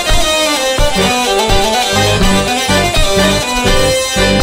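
Hurdy-gurdy and chromatic button accordion (bayan) playing a three-time bourrée, with a steady pulse of bass notes under the melody.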